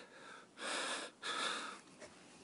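A man draws two audible breaths in quick succession, each about half a second long, while choked up and fighting back tears.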